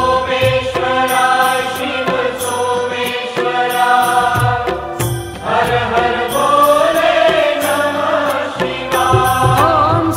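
Devotional music: voices singing a Shiva mantra chant over a steady low beat.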